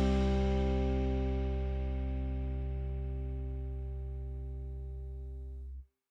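Outro music ending on a guitar chord that rings out and fades slowly, then cuts off abruptly near the end.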